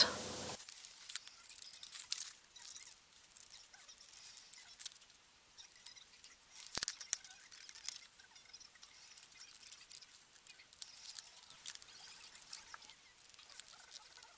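Scissors snipping through a paper template: faint, irregular snips and paper rustling, with one sharper click about halfway through.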